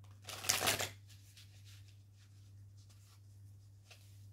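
Tarot cards being shuffled by hand: a brisk burst of shuffling just after the start, then faint scattered flicks and slides of the cards.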